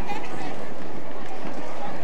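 Indistinct voices of people talking over a steady background noise, with no single loud event.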